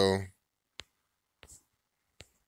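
Fingertip taps on a smartphone touchscreen while switching browser tabs: one sharp tap a little under a second in, then two fainter taps about half a second later.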